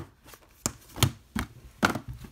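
Plastic Blu-ray cases clacking as they are handled and set down on a table: four sharp knocks in quick succession.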